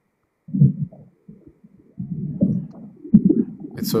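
A muffled, indistinct voice coming over a poor video-call connection, with only its low tones getting through. It comes in short broken stretches about half a second in and again from about two seconds on.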